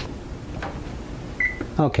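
Single short electronic beep from a gas range's oven control panel as the oven timer is keyed in.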